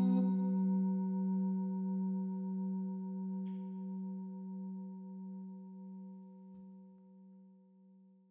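A singing bowl's long ringing tone, struck just before, slowly dying away with a gentle, regular wavering beat until it has almost faded out.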